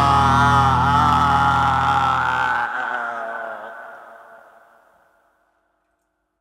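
The last held chord of a heavy metal song: a wavering high guitar tone over a dense low drone. The low end cuts off about two and a half seconds in, and the remaining high notes ring on and fade away to silence.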